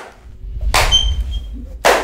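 Heavy thuds about a second apart, the first followed by a low rumble.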